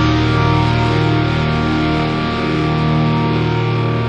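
A rock song's distorted electric guitar chord, held and ringing steadily as the song closes.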